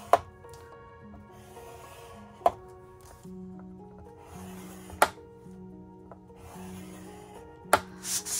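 Background music with steady held notes over the scrape of a plastic bone folder drawn along the grooves of a scoring board, scoring fold lines into cardstock, several short strokes in all. Four sharp clicks come about two and a half seconds apart.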